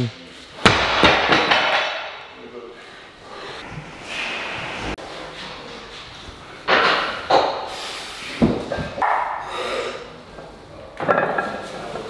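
A heavy deadlift barbell loaded with bumper plates is set down on the gym floor with a loud thud and a rattle of plates about half a second in. A second thud comes past the middle, as the bar returns to the floor between reps. Hard breaths and grunts from the lifters fall in between.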